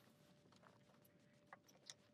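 Near silence, with two faint ticks near the end.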